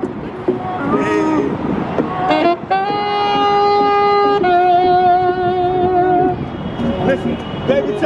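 Saxophone played live on the street: a few short gliding notes, then about three seconds in a long held note, followed by a second long note with vibrato that ends about six seconds in.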